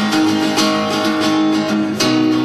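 Acoustic guitar being strummed, its chords ringing in an instrumental passage with no singing.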